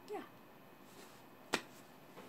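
A single sharp click about one and a half seconds in, in a quiet small room.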